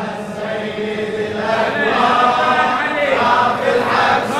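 Congregation of men chanting a Husseini latmiya mourning refrain together, many voices on one melodic line, growing louder after about a second and a half.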